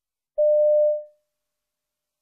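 A single electronic beep: one steady tone starting about half a second in, held briefly and then fading out. This is the listening test's signal tone, which marks the start of each recorded piece.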